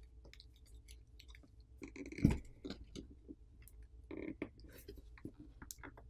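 Plastic pry card working under a glued smartphone battery: irregular crackling clicks and scrapes as the adhesive gives way, with one louder knock about two seconds in.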